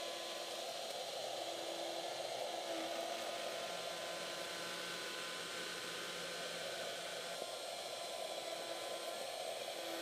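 Shaper Origin handheld CNC router running steadily with a 16 mm pocketing bit, cutting a deep pocket: an even whirring, rushing noise.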